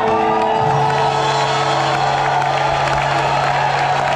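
Live rock band's guitars and bass holding sustained notes, a new low bass note coming in about half a second in, with a crowd cheering over the music.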